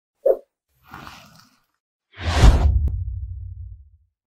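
Logo-intro sound effects: a short pop, a faint swish, then a loud whoosh with a deep boom about two seconds in, whose low rumble fades away over the next second and a half.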